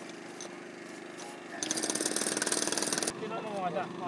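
A power tool hammering rapidly over a steady hum, loud for about a second and a half midway, with people talking quietly.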